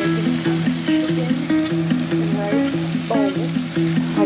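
Chicken sizzling as it fries on a ridged stovetop griddle pan, a steady hiss, under background music with a melody of short repeating notes.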